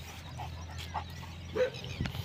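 A dog giving three short calls, the last and loudest about a second and a half in.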